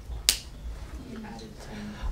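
A single sharp click or snap about a quarter second in, followed by a faint low hum of a voice.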